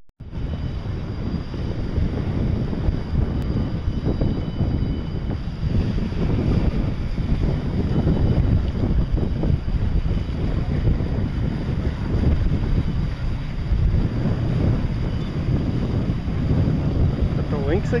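Wind buffeting the microphone: a low, gusting rumble with no clear engine rhythm.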